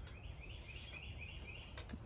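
A small bird singing faintly: a quick run of about eight rising chirps lasting just over a second, over a low steady rumble.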